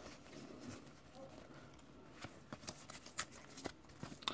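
Faint, soft clicks and rustles of a small stack of Pokémon trading cards being handled and slid from the back of the stack to the front, with a few light clicks in the second half.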